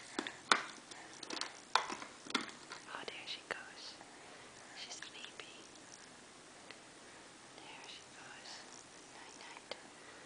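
A baby's mouth sounds while eating: a few sharp smacks and clicks in the first three seconds, then soft, breathy little vocal sounds.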